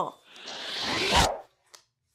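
Sound effect of the picture card going into the bag: a swoosh that builds for about a second, ends in a soft low thump and cuts off suddenly.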